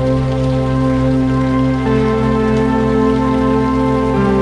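Background new-age music: sustained chords held steadily, moving to a new chord about two seconds in.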